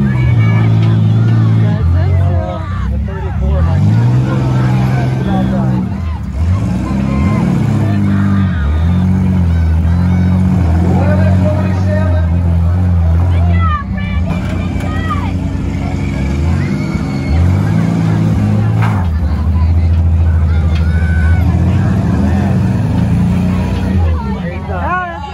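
Demolition-derby compact-car engines revving hard and dropping back, loud and continuous, as the cars push against each other, with a couple of sharp knocks around the middle. Spectators' voices carry over the engines.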